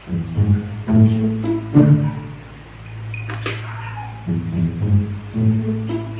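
Music playing from a satellite TV channel through the TV's speakers, a run of pitched notes over a steady low hum.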